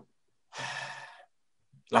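A man sighs: one short, breathy exhale lasting under a second, with a faint voice in it, between words. He starts speaking again right at the end.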